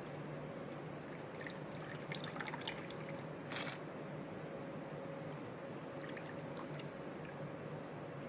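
Last of a strawberry daiquiri trickling and dripping from a cocktail shaker's strainer holes into a glass. The drips are faint and come as scattered small ticks, over a faint steady hum.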